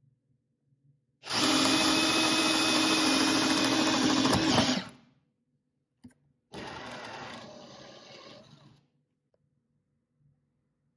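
Cordless drill boring a twist bit into a pine beam: a loud, steady run with a motor whine for about three and a half seconds. After a short click comes a second, quieter run of about two seconds that fades out.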